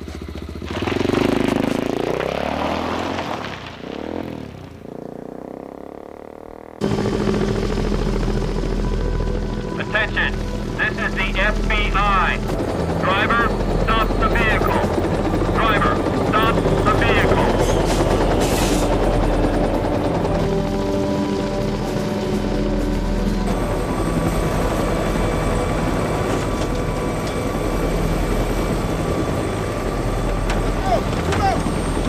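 A motorcycle engine revving with rising and falling pitch, fading away over the first few seconds. Then, from about seven seconds in, a sudden loud, steady helicopter rotor and engine that runs on to the end.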